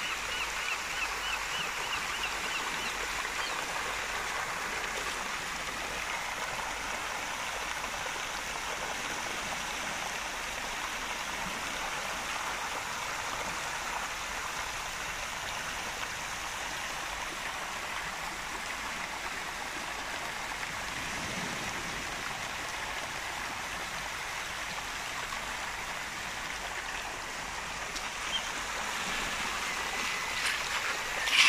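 Small sea waves washing up and draining back through a shingle beach of pebbles, a steady hiss of water over stones.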